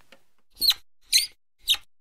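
Three short, high-pitched cartoon squeaks, about half a second apart.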